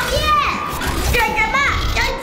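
Speech only: a high-pitched cartoon character's voice exclaiming in Mandarin, over a low rumble.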